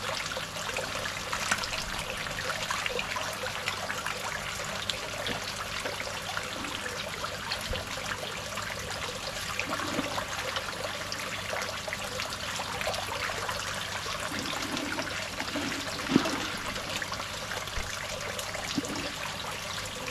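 Steady trickle of water pouring from a pipe into an aquaponics fish pond, with small splashes of tilapia feeding at the surface. One sharper, louder sound comes about sixteen seconds in.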